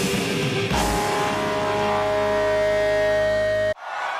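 Heavy rock music with distorted guitar, building into a long held chord that cuts off suddenly near the end.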